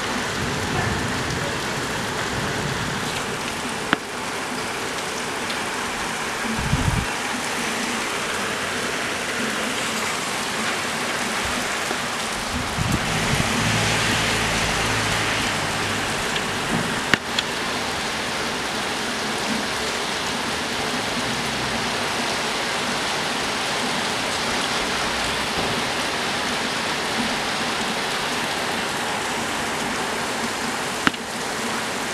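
Steady rain from a storm falling on roof tiles and a wet street, an even hiss that swells a little louder midway, with two sharp clicks.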